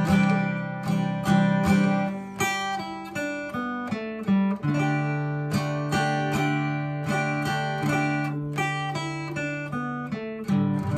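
Acoustic guitar played in open position: strummed open chords, with single-note fills from the G major pentatonic scale picked between them. A low note rings under the plucked notes in the second half.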